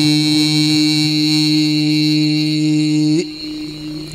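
A man's voice chanting a khassida in Arabic through a microphone, holding one long, steady note that turns briefly upward and breaks off about three seconds in.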